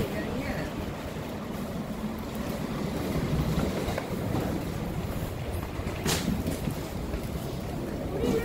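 Steady background noise of a busy airport terminal hall, with faint distant voices and one brief sharp sound about six seconds in.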